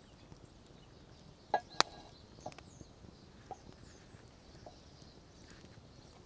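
Metal spoon clinking against a cast iron pan as baked beans are spooned onto toast over a wood fire. There are two sharp clinks about a second and a half in, then a few lighter ticks, with faint bird chirps behind.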